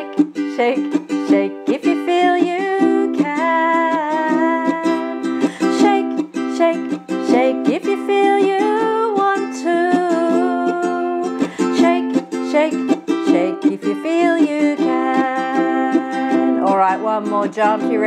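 Ukulele strummed in a steady rhythm as accompaniment, with a woman singing a simple children's action song over it.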